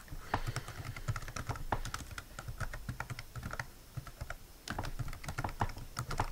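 Computer keyboard being typed on: a quick, irregular run of key clicks, with a short pause about two-thirds of the way through before the typing resumes.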